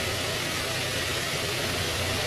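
Steady background hiss with a low hum underneath, holding level throughout.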